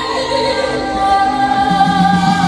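A woman sings a Korean trot song into a microphone, holding long notes, over electronic keyboard accompaniment, amplified through PA speakers.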